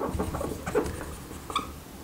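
Felt-tip marker writing on a whiteboard: faint scratching strokes, with a short squeak about one and a half seconds in.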